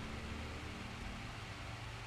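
Faint, steady background hiss with a low hum: room tone picked up by the microphone.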